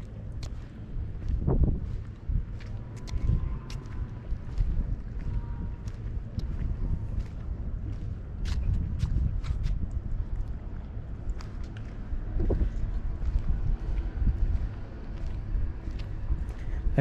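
Wind rumbling on the microphone, with scattered light clicks and a faint brief tone about three seconds in.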